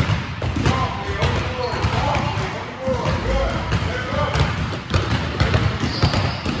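Several basketballs being dribbled at once on an indoor gym court, a quick irregular patter of overlapping bounces.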